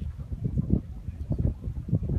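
Wind buffeting a phone's microphone, an irregular low rumble that comes and goes in gusts.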